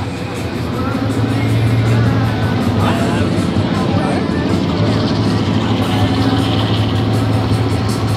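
A car engine running close by: a low, steady drone that grows louder about a second in and holds.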